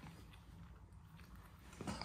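A dog chewing on a small object, heard only as a few faint, scattered clicks in a quiet room.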